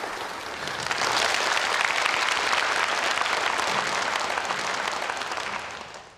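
Audience applause, a dense clatter of many people clapping that swells about a second in and fades away near the end.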